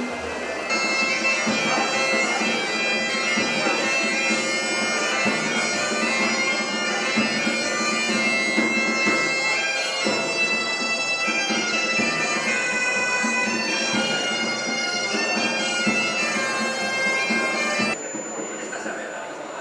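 Galician gaita (bagpipe) playing a lively folk tune over its steady drone, with hand-drum accompaniment.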